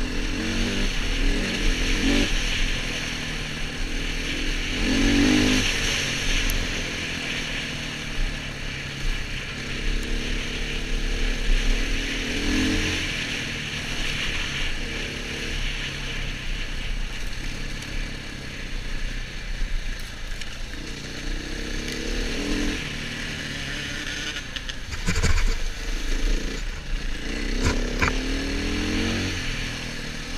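KTM enduro motorcycle engine heard from the rider's helmet, its pitch rising and falling over and over as the throttle is opened and closed on a rough dirt track, with wind hissing over the microphone. A few sharp knocks from bumps come near the end.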